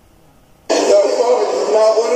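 Faint room tone, then the soundtrack of a video being played back cuts in abruptly under a second in: a voice with no bass, thin like played-back audio.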